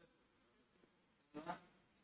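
Near silence: room tone, with a short faint voice-like sound about one and a half seconds in.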